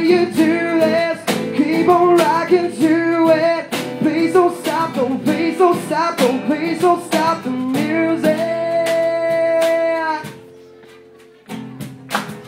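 Live guitar strumming with a male voice singing over it, sliding between notes, then holding one long note. About ten seconds in the music drops away to a quiet stretch before the strumming starts again near the end.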